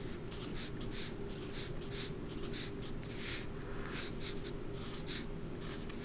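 Sharpie permanent marker writing digits on paper: a series of short scratchy strokes, one or two a second.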